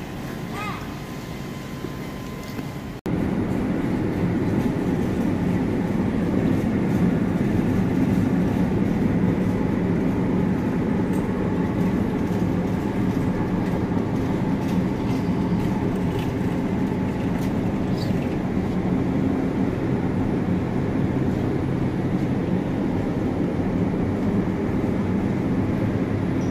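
A steady, fairly loud low rumble that starts abruptly about three seconds in, after a quieter stretch of background noise, with a few faint clicks over it.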